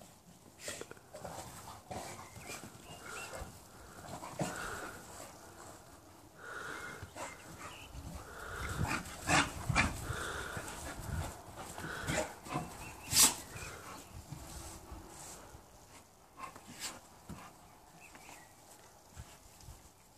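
Two pit bulls play-fighting, their breathing and small dog noises coming in short irregular snatches, busiest around the middle. A single sharp tap about thirteen seconds in is the loudest sound.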